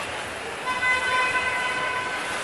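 A horn sounds one steady, pitched toot lasting about a second, starting just under a second in, over the hubbub of a crowded hall.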